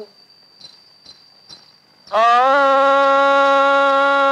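A faint, steady, high-pitched trill in a pause of the song. About two seconds in, a man's singing voice comes in loud on one long note held at a steady pitch, in a Malayalam folk-style film song.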